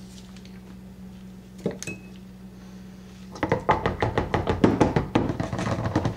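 Stick blender worked in a plastic measuring jug of soap batter: a single knock, then from about halfway through a rapid, irregular run of knocks and clatter.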